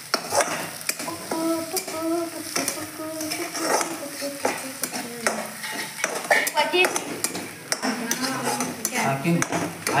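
Metal spatula scraping and clacking against a steel kadai as eggs are stirred, with frying oil sizzling beneath.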